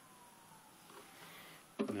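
Quiet background with a faint tone that slides slowly down in pitch during the first second, then a man's voice begins near the end.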